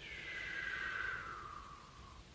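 A man's long, slow audible breath out, a breathy hiss that sinks in pitch and fades over about two seconds.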